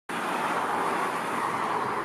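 Outdoor street ambience: a steady rush of road traffic noise.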